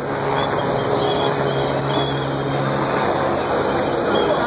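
Steady street noise around a car stopped in a crowd: a low engine hum that fades out about two-thirds of the way in, with people's voices mixed in.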